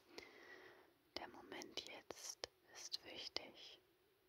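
A woman whispering softly in German close to the microphone, in short phrases with brief pauses.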